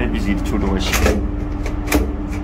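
Metal slide bolt on a lifeboat storage locker being worked, with a sharp metallic click just before the end, over a steady low hum.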